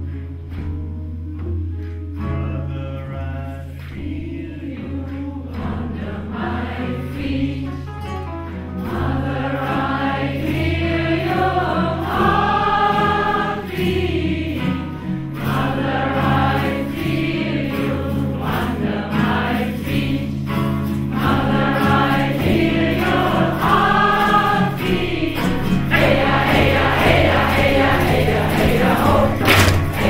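A mixed group of voices singing a Native American chant together over a steady low drone. The singing starts thin and swells to full strength from about ten seconds in, growing fuller near the end.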